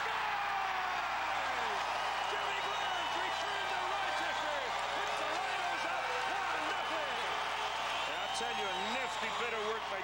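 Stadium crowd cheering a home goal: many voices shouting at once in a dense, steady din.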